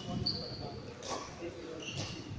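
Footsteps on a wooden indoor court floor, with a few short, high squeaks of sports shoes.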